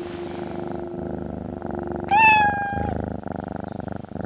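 Tabby cat purring close to the microphone, with a single meow a little after two seconds in.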